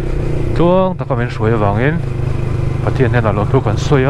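Motorcycle engine running steadily at road speed, a constant low drone under a rider's talking.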